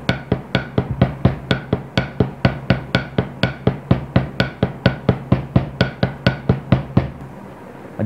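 Drumsticks playing a double paradiddle led by the left hand (L R L R L L, repeated) on a rubber practice pad resting on a snare drum. The sticking is even, about four strokes a second, and stops about seven seconds in.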